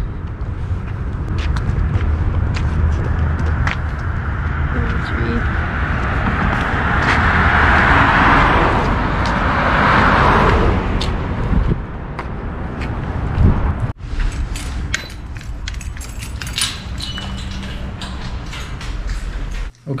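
A car passing on the road, its tyre and engine noise swelling to a peak about eight to ten seconds in and then fading, over a steady low rumble.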